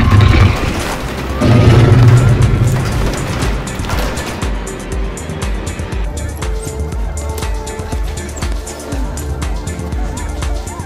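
Film soundtrack: music under two loud, low booming crashes in the first two and a half seconds, then quieter music with an even beat.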